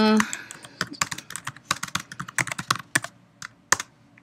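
Typing on a computer keyboard: a quick, irregular run of keystrokes entering a terminal command, a brief pause, then a couple more keystrokes near the end.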